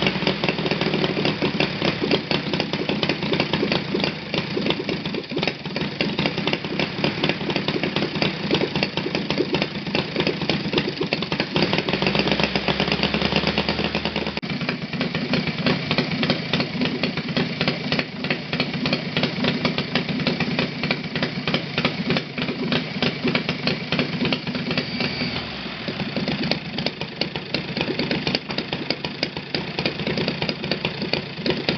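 Saito FG-60R3 three-cylinder four-stroke radial model engine running steadily on glow plugs, with its propeller turning. Its speed changes a few times, around 12 and 14 seconds in and again near 26 seconds, and it is running faster by the end.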